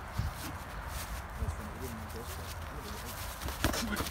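Feet shuffling on leaf-covered ground, with a few soft thumps over a steady hiss.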